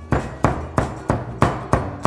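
A cleaver chopping minced pork with chillies and garlic on a wooden cutting board, with steady, evenly spaced strokes about three a second.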